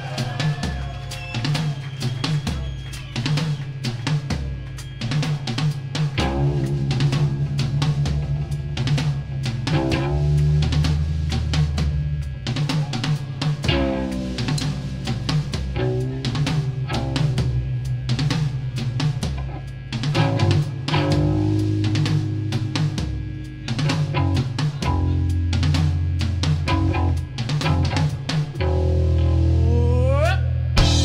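Punk rock band playing an instrumental passage live: a driving drum kit with fast, dense bass drum, snare and cymbal hits over electric bass and electric guitar.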